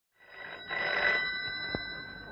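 A rotary-dial desk telephone's bell ringing: one ring that swells in and rings for about a second, followed by a short knock near the end.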